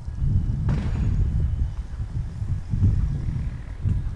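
Wind buffeting a handheld camera's microphone outdoors: a loud, uneven low rumble, with a brief hissing gust about a second in.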